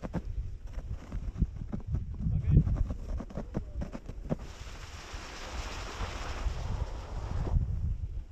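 Wind rumbling on the microphone of a sledge sliding slowly over snow, with scattered knocks in the first half. A hissing scrape of the sledge on the snow runs for about three seconds past the middle.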